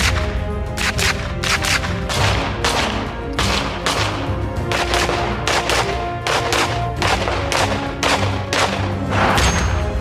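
Carbine gunfire from several guns: a steady run of single shots, about two to three a second, laid over background music.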